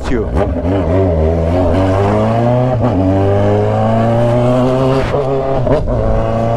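Kawasaki Z900RS inline-four motorcycle engine pulling under throttle, its pitch climbing steadily as the bike accelerates, with a short break about five seconds in.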